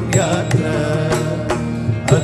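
Malayalam Ayyappa devotional song playing as background music, in a short gap between sung lines, with a steady beat of about two strokes a second.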